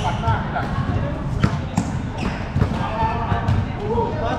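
Basketballs bouncing on a hard court in irregular thuds, with voices over them and a sharp knock about a second and a half in.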